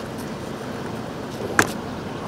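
Steady outdoor background noise, with one sharp knock about one and a half seconds in.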